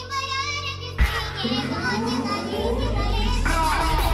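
Hardtekk electronic track in a build-up section. A high, pitched-up wavering vocal sample is followed about a second in by a hit, then a sustained deep bass note and rising synth sweeps, all with 8D panning.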